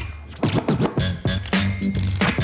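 Turntable scratching: a vinyl record worked back and forth by hand, making quick rising and falling sweeps over a hip-hop beat. The beat drops out briefly at the start and comes back about a second and a half in.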